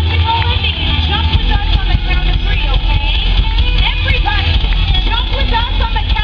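Live rock band playing loudly, with a strong steady bass, and voices over the music.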